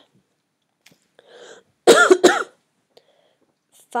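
A person coughing twice in quick succession about two seconds in, after a short intake of breath.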